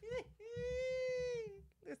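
A woman's laughter: a short burst, then one long, high-pitched held note lasting about a second, like a drawn-out wail, that sags and fades at the end.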